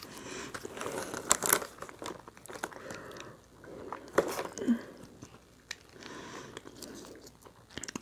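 A small plastic Taco Bell sauce packet being torn open and squeezed out over a chalupa. Crinkling and tearing clicks in the first second and a half, then softer intermittent rustles and handling sounds.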